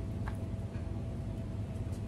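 A gloved hand rubbing a cloth over the plastic casing of an old TV, giving a few faint light taps, over a steady low background rumble.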